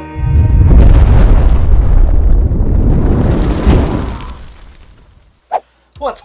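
A loud explosion-like boom that rumbles heavily for about four seconds and then fades away, ending the intro music.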